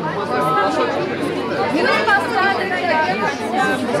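A crowd of people talking over one another, several voices at once with no single voice standing out.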